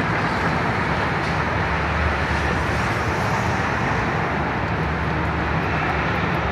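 Steady city street traffic noise: a continuous rumble and hiss of passing vehicles, with no distinct events.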